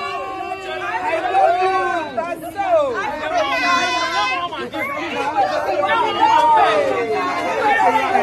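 A group of women's voices chattering and exclaiming over one another, several at once, with wide swings in pitch.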